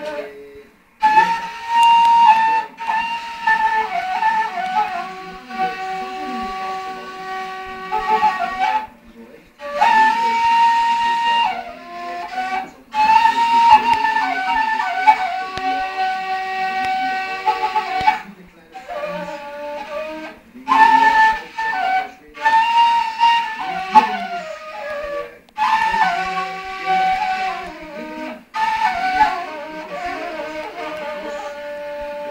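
A long end-blown folk flute played solo: a melody in phrases of held high notes and quick runs, each phrase cut off by a short pause for breath, with a fainter lower tone beneath.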